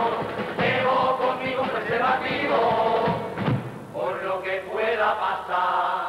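A carnival murga of men singing in Spanish, voices in chorus in short phrases, with the bombo bass drum and caja snare drum beating beneath.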